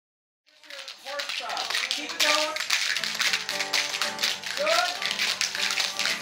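Many pairs of spoons clacking in a fast, uneven patter, with an acoustic guitar strumming chords and children's voices over it. The sound fades in about half a second in.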